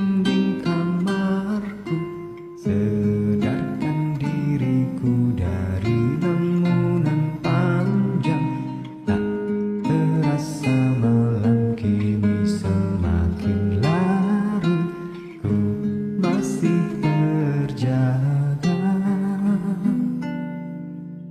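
Acoustic guitar backing track with strummed and plucked chords, and a male voice singing a slow Indonesian pop ballad over it, with short pauses between phrases.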